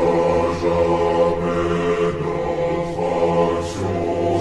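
Choir singing a French military promotion song, slowed down and drenched in reverb, with sustained, smeared notes.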